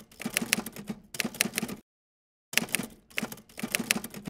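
Typewriter sound effect: rapid runs of key clacks in two bursts, with a short silence between them a little under two seconds in.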